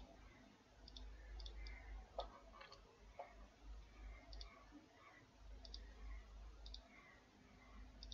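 Faint computer mouse button clicks, several of them as quick double ticks, scattered over a few seconds above a low hum.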